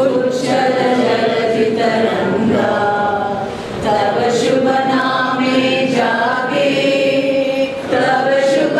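A group of voices singing together, led by two women at a microphone, in slow long-held notes, with a short break between phrases a little before the halfway point.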